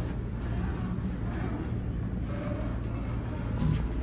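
Elevator sliding door closing and then reopening after a hand touches its old-style mechanical safety edge, with a few soft clicks over a steady low hum.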